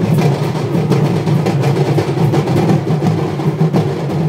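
Sambalpuri dulduli folk band playing loud, fast, dense drumming.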